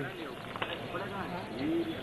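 Faint, indistinct voices of people talking, well below the level of the narration.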